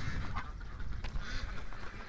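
Faint, scattered soft quacks and murmurs from domestic ducks.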